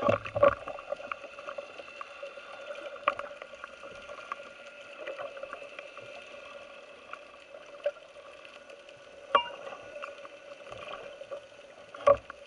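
Underwater sound picked up by a camera on a speargun: a steady hum with a few fixed tones, broken by sharp clicks and knocks from gear being handled, loudest at the start, about three seconds in and about nine seconds in.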